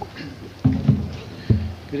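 A few dull thumps and knocks close on a microphone: two at about two-thirds of a second and just under a second in, and one more at about a second and a half, just before a man starts speaking.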